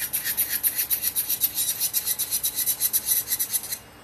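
Electric nail drill bit grinding an acrylic nail, a fast rasping pulse that stops suddenly just before the end when the bit leaves the nail.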